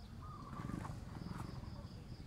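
Rural outdoor ambience: a distant animal call wavers for about a second over a low rumble. A high, pulsing insect trill comes in about a second in, several pulses a second.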